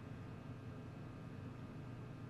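Quiet room tone: a steady low hum with faint hiss and no distinct sounds.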